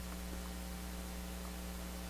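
Steady electrical mains hum with a faint hiss behind it.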